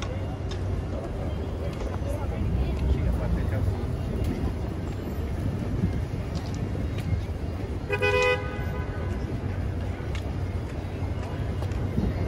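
City street ambience of steady traffic rumble and passers-by talking, with a single short car horn honk about eight seconds in.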